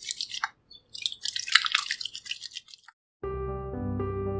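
Soapy wet hands splashing and swishing in a glass bowl of sudsy water, a dense run of small wet squelches and splashes for nearly three seconds. Soft piano music begins near the end.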